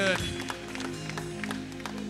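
Soft background music of sustained low chords held steadily, with faint scattered taps over it; a man's spoken word ends right at the start.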